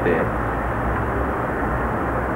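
Steady low rumble and hiss of background noise, even in level throughout.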